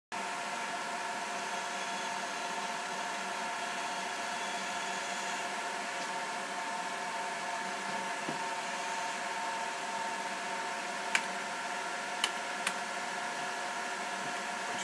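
Pan-tilt drive motors of a CCTV camera head running as the head tilts, a steady hum carrying several steady whining tones. Three sharp clicks come near the end.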